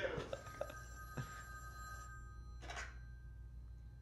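A corded landline telephone ringing, faint and steady, in a film trailer's soundtrack.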